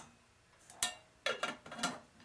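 Metal clicks and clinks of a thin cookie-tin lid being handled on a small aluminium mess-kit pot: one sharp click about a second in, then two rougher clinks near the end.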